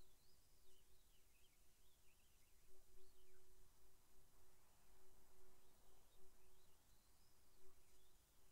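Near silence: quiet room tone with a faint low hum and faint high chirping glides.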